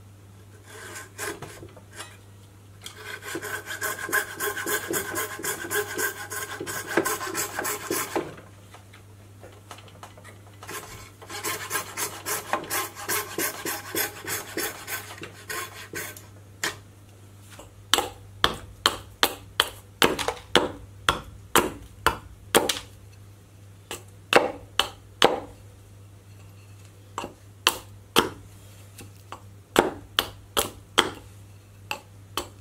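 A small frame saw cutting wood in fast back-and-forth strokes for several seconds, twice. From a little past halfway, a file shaping the wood in separate, slower strokes, about one or two a second.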